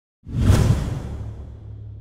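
A whoosh sound effect for a logo reveal, coming in sharply a fraction of a second in and fading away over about a second, over a low sustained tone.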